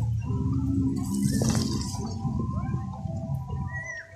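Wind buffeting the microphone in a steady low rumble, with faint music underneath.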